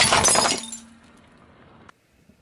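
A car tyre rolling over a paper plate of water beads, bursting and scattering them: a loud, dense crackling crunch about half a second long. It fades to a faint hum that cuts off suddenly near the end.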